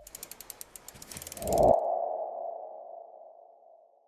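Logo-sting sound effects: a run of sharp ratchet-like ticks that quicken, then one ringing tone that swells about a second and a half in and fades out over the next two seconds.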